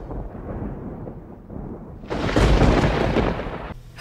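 Thunder sound effect: a low rumble as the intro music fades, then a loud thunderclap starting suddenly about two seconds in and rolling for over a second before cutting away.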